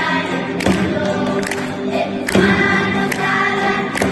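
Children's choir singing a Spanish Christmas carol, accompanied by acoustic guitars, with a steady beat of sharp strokes a little more than once a second.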